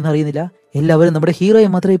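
Speech: a voice talking in short phrases, with a brief pause about half a second in.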